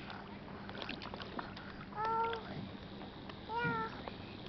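A small child making two short, high-pitched vocal sounds about a second and a half apart, over faint water sloshing around the bodies in the sea.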